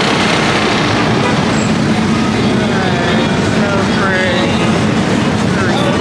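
Busy city street ambience: a steady traffic rumble with snatches of passers-by talking.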